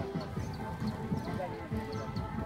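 Men's voices talking over music with steady held tones, with faint short ticks above them.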